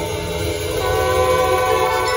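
Drum and bugle corps horn line holding sustained brass chords, moving to a fuller, louder chord about a second in.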